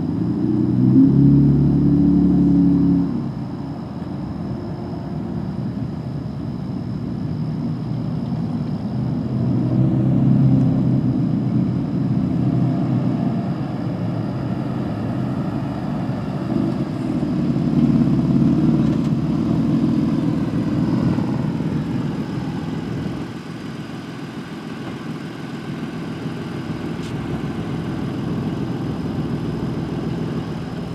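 A pickup truck's engine running in an open lot, a low rumble that swells louder three times, about a second in, around ten seconds in, and again near twenty seconds.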